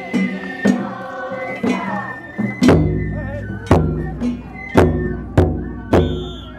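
Festival music from a Nagasaki Kunchi float: a large drum struck about once a second, the later strikes with a deep boom, under a group of voices singing and a held high note.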